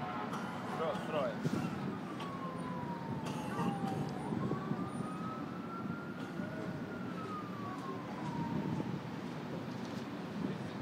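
An emergency-vehicle siren in a slow wail, its pitch falling, rising and falling again over several seconds, above a steady low background rumble.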